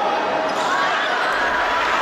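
Steady din of a crowd of spectators in a gym during a basketball game, voices mixed with the noise of play on the court.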